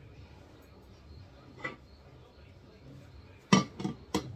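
Metal bundt cake pan handled under a dish towel on a wooden cutting board: a faint knock about two seconds in, then a loud clatter of the pan near the end, over a low steady hum.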